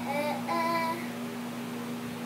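A young boy singing, holding pitched notes for about the first second and then stopping.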